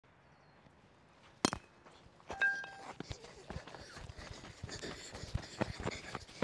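A bat cracks once sharply against a pitched ball about a second and a half in. A short held voice call follows, then quick irregular footfalls scuffing on dirt as the batter runs.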